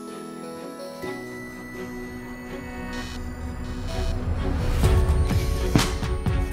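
Background music over a power drill boring into a hollow-core desktop, the drilling noise growing louder through the second half, with a couple of sharp knocks near the end.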